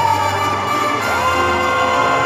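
Live band music from a stage band that includes mariachi musicians, a harp and a drum kit. A long held note begins about a second in, and a crowd cheers over it.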